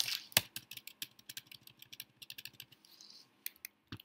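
Typing on a computer keyboard: a quick, irregular run of key clicks, with a couple of louder clacks in the first half-second.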